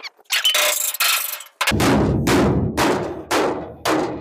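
Heavy hammer striking a dented steel trailer fender to straighten it: a short scraping sound first, then, a little under two seconds in, a run of blows at about two a second, each one ringing on the sheet metal.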